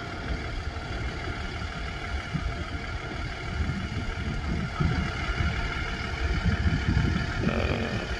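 Diesel engine of an International flatbed delivery truck idling steadily, a continuous low rumble.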